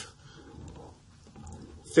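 A pause in a man's narration: faint room noise, with his voice trailing off at the start and starting again right at the end.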